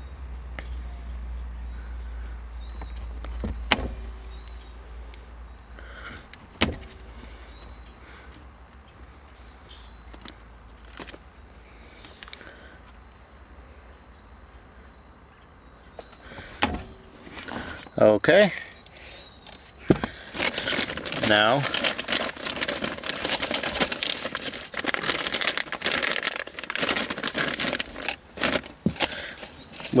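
Hand wire strippers cutting and stripping insulation from thin automotive wires: a few sharp metallic clicks spaced several seconds apart.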